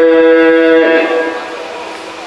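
A man's voice singing one long held note in a melodic chant, which fades away about a second in.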